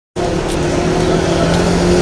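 Street traffic, with vehicle engines running close by. The sound cuts in suddenly just after the start.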